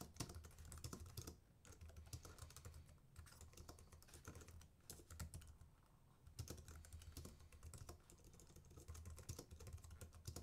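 Faint typing on a computer keyboard: runs of quick key clicks broken by short pauses.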